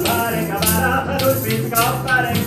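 Lively Baroque dance tune played live by an early-music ensemble: plucked baroque guitar over a sustained bowed bass line, with tambourine jingles striking on the beats.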